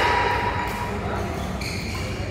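Players' voices echoing in a large indoor badminton hall over a steady low hum, with a brief high squeak about one and a half seconds in.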